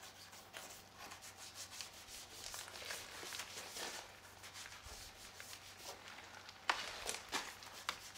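Wet, soapy car bodywork being scrubbed by hand with car-wash shampoo: a run of short rubbing strokes, with two louder ones near the end.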